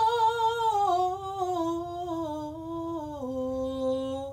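A woman's voice singing unaccompanied, without words. She holds a long note with vibrato, then steps down through several notes to a lower note held near the end.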